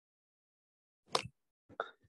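Dead silence from a noise-suppressed video-call line, broken about a second in by one short plop-like pop, then a brief faint vocal sound just before a student starts to answer.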